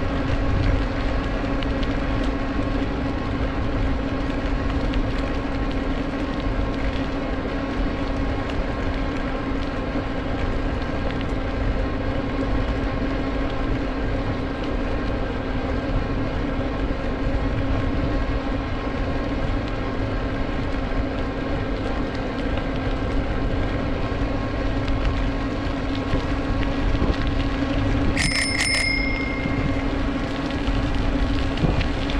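Bicycle riding along a paved path: a steady rush of wind and tyre noise with a steady hum underneath. Near the end a bicycle bell is rung, a quick run of about three strikes that rings on briefly.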